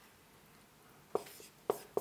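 Marker writing on a whiteboard: after about a second of quiet, a few short, faint scratching strokes as letters are written.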